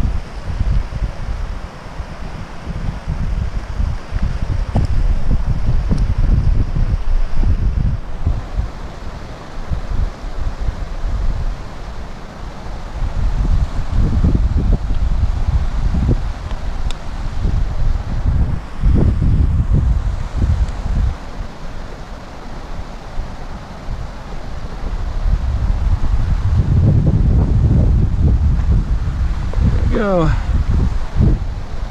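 Wind buffeting the microphone in gusts, a heavy low rumble that swells and eases several times, strongest in the first third and again near the end.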